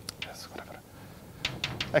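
Chalk writing on a blackboard: a few short scratches and taps of the chalk, with more strokes near the end.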